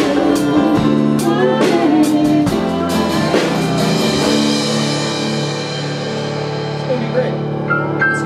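A band playing the last bars of a rock song: drum hits under guitar chords for the first few seconds, then a final chord held and left to ring, slowly fading. Just before the end a few bright plucked notes begin.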